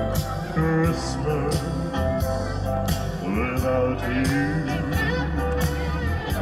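A man singing a song through a microphone and PA system over backing music with a steady beat.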